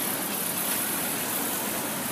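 Road traffic going past close by: a steady hum of car and van engines and tyre noise, with no single sound standing out.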